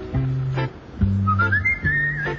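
Light background music: a high, wavering whistle-like melody line over a bouncy pattern of low plucked bass notes.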